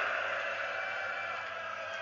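Steady hiss of background noise with no clear event, easing slightly in level, during a pause between a man's sentences.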